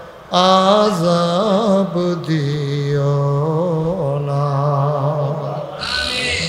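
A man's voice chanting an Islamic supplication (munajat) in a sung melody into a microphone. After a brief breath he comes in, wavers through a quavering ornament about a second and a half in, then holds one long steady note for over three seconds.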